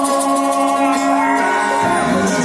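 Live acoustic music from a ukulele and a guitar playing, with long held notes and one note that bends near the end.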